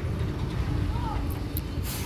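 Steady low rumble of outdoor background noise in a pause between speech, with a faint short voice sound about halfway through and a brief hiss near the end.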